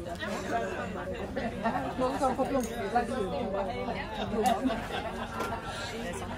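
Chatter of many people talking at once, overlapping conversations with no single voice standing out.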